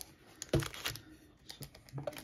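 Light clicks and taps of hands handling a clear plastic card cube and its foil card packs, with one firmer knock about half a second in.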